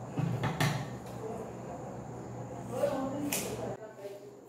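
Scissors snipping through a lock of hair, two short crisp cuts about three seconds apart, with handling rustle and a steady low hum underneath.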